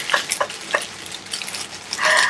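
Plastic mailing bag rustling and crinkling as a long boxed parcel is handled on a wooden table, with a few short clicks and knocks in the first second.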